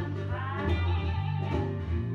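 A blues band recording in an instrumental stretch between sung lines: guitar over steady low bass notes.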